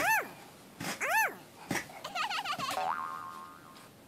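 Cartoon "boing" sound effects: two springy tones that each rise and fall, about a second apart, followed by a wobbling warble and a run of tones that fades out near the end.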